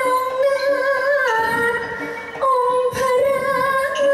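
A woman singing a Thai likay vocal line into a microphone, holding long drawn-out notes that step down and change pitch a few times.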